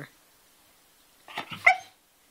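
Australian shepherd puppy giving a short bark about one and a half seconds in, on the hand signal for "speak".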